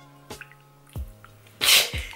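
A bottle of very runny liquid foundation shaken, its contents sloshing faintly like water, the sign of a thin, barely-covering formula. Near the end a sudden loud breathy burst of laughter, over quiet background music.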